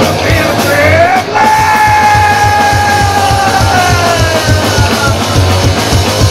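Live punk rock band playing loud, electric guitar and drums under a singer's voice. The voice slides up twice, then holds one long yelled note for about three seconds that sags near the end.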